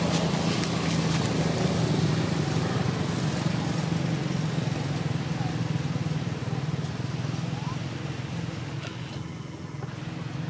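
A motor vehicle engine running close by, a steady low drone that gradually fades away.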